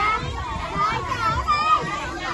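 Several children talking and calling out over one another, high-pitched overlapping voices.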